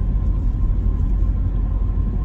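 Steady low rumble of a car being driven, heard from inside the cabin: engine and road noise, with a faint steady high tone running through it.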